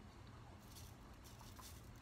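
Near silence, with faint scattered pattering of salt being sprinkled over walnuts on a pizza plate.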